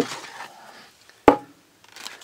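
Hard plastic toy capsule coming apart with a small click, then a single sharp knock of plastic a little over a second in, typical of a plastic part being set down on a tabletop.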